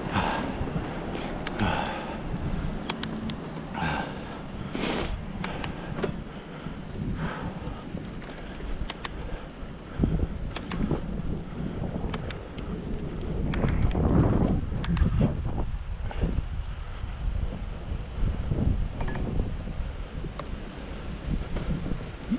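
Wind rumbling on the microphone of a camera riding on a moving bicycle, swelling into stronger gusts about halfway through, with frequent short clicks and rattles from the bike rolling over the paved path.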